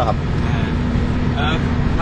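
Steady engine drone and road noise inside the cab of a Mitsubishi pickup with a 2500 cc engine, cruising at highway speed.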